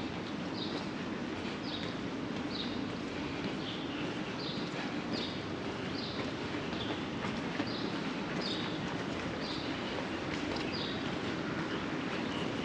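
Steady city street ambience: a constant low hum and hiss, with short high chirps repeating about once or twice a second.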